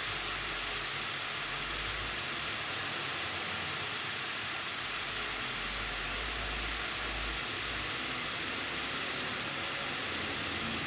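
A steady, even hiss with a faint low rumble that comes and goes.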